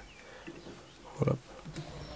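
A pause with low room hiss, broken once by a short grunt-like voice sound about a second in.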